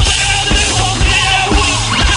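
Rock band playing live, heard as a direct soundboard mix: drum kit with a steady kick beat about twice a second, bass and electric guitar.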